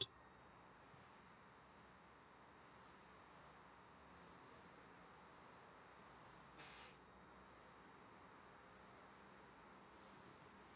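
Near silence: faint steady hiss of room tone, with one soft, brief noise about two-thirds of the way through.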